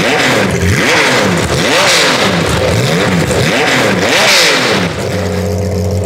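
Porsche 996-generation 911 GT3 RSR race car's flat-six blipped hard over and over, each rev shooting up and dropping straight back about once a second. Near the end it settles to a steady idle.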